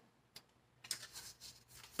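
Faint papery rustling of a small booklet's pages being thumbed through by hand, with a light tick early on and a run of soft rustles in the second half.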